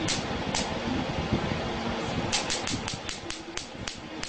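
Spark plugs in a water spark plug test circuit snapping as sparks jump their gaps. There are two sharp snaps in the first second, then a quick run of about six a second in the second half, over a steady background hiss.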